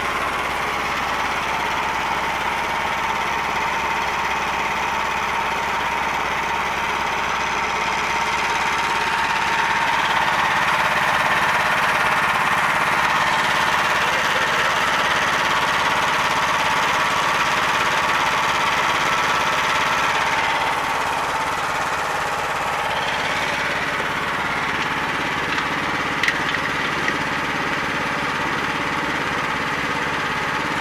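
The tow truck's diesel engine running steadily, a little louder for a stretch in the middle, with a brief click late on.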